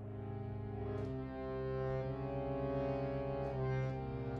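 Harmonium playing held reed chords over a steady low drone, the upper notes changing a few times.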